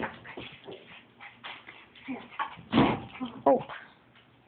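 Small pet dog whimpering faintly among rustling and handling noises, with a short louder noise about three seconds in.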